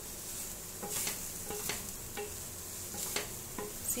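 Wooden spatula stirring and scraping cut green beans around a stainless steel pan, with several sharp scrapes against the metal over a steady sizzle from the still-hot pan.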